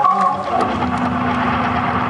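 Overdriven Hammond organ played loud through a concert PA. Higher held notes give way, about half a second in, to a low, rough sustained chord.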